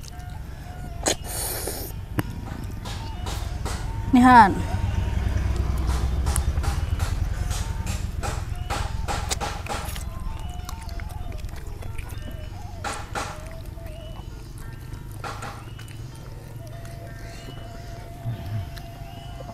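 Close-miked eating sounds: chewing and crunching on spicy chicken heads, with irregular wet clicks and smacks throughout, over a low rumble that swells in the middle. A short falling vocal sound comes about four seconds in.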